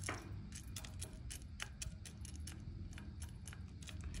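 Faint, irregular clicks and ticks, about two or three a second, from coffee beans being stirred with a wooden spoon as they roast in a small long-handled pan over hot coals.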